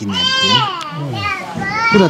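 A child's high-pitched voice calling out twice in the background.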